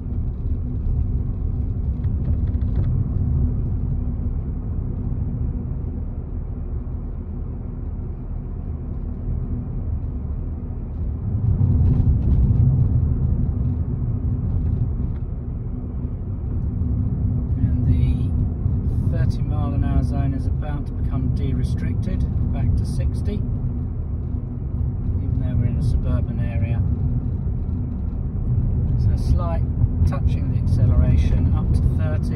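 Steady low rumble of a Ford car's engine and tyres heard inside its cabin while it drives along, growing louder about a third of the way in as it picks up speed.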